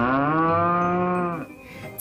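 Water buffalo mooing once: one long call that rises at first and then holds steady, stopping about one and a half seconds in.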